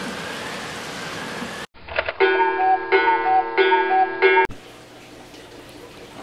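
A burst of TV-static white-noise hiss for about a second and a half, then a short musical jingle of held tones for about three seconds that cuts off suddenly, leaving low background noise.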